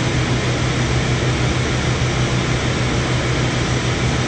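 Steady machine drone with a low, constant hum from the food truck's running equipment, unchanged throughout.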